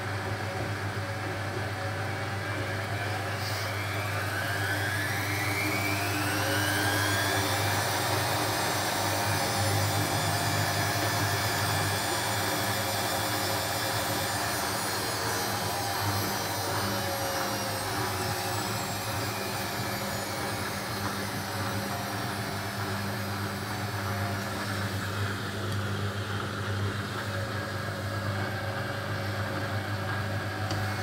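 Hotpoint WF250 front-loading washing machine spinning its drum between rinses. The motor whine rises in pitch over several seconds as the drum speeds up, holds, then falls slowly as it slows down, over a steady low hum.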